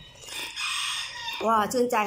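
A long slurp of soup broth sipped from a spoon, followed about a second and a half in by a loud, drawn-out, wavering exclamation of delight at the taste.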